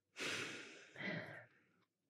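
A woman's soft, breathy sigh that fades away, followed about a second in by a shorter breath.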